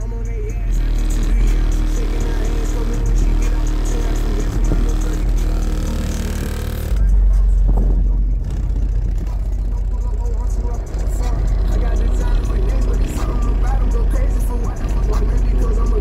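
Music with vocals played loud through a car-audio system of two DB Drive WDX G5 10-inch subwoofers on a Rockford Fosgate 1500bdcp amplifier at 2 ohm, heard from outside the truck. The deep bass dominates and gets stronger about seven seconds in.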